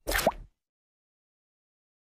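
A short cartoon 'plop' sound effect from the Big Idea logo animation, lasting about half a second, with a quick upward swoop in pitch. It is followed by silence.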